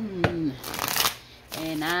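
A deck of tarot cards shuffled by hand: a sharp tap of the cards, then a quick crackling shuffle lasting under a second, about halfway through.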